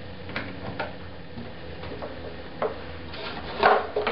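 A few light metallic clicks as pliers or a spanner tighten the output jack's nut on the acoustic guitar, then louder clatter about three seconds in as the tool and guitar are handled.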